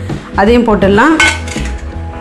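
Chopped tomatoes tipped from a metal plate into a metal cooking pot, the plate knocking against the pot about a second in and ringing on. Background music plays underneath.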